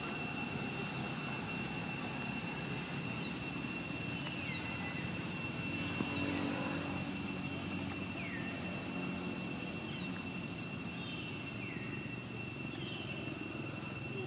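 Steady outdoor background: a low rumble like a distant engine, under a steady high-pitched tone, with a short falling chirp every second or two.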